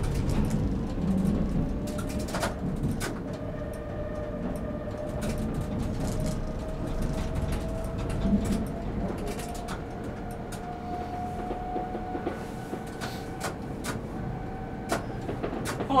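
Tram running along its track, heard from the driver's cab: a low rolling rumble with a faint electric motor whine that rises slowly in pitch as the tram gathers speed, then holds steady. Scattered light clicks come through over the rumble.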